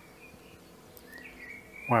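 Quiet garden background with a few faint, high chirps, a rising one in the second half, before a man's voice starts at the very end.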